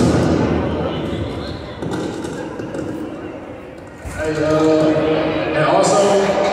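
A voice echoing through a large gym, with a basketball bouncing on the hardwood court. There is a sharp thud right at the start, and the voice grows louder about four seconds in.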